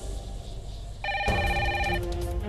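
A desk telephone starts ringing about a second in, with a fast trilling ring.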